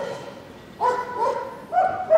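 A dog giving two short, high-pitched yelps, about a second in and again near the end.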